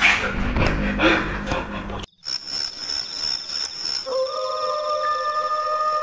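People shouting in panic, with scuffling, for about two seconds. Then a sudden cut to an eerie sustained synthesizer drone: high held tones, with lower held notes joining about two seconds later.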